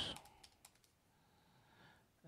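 A few faint keystrokes on a computer keyboard, mostly in the first half second.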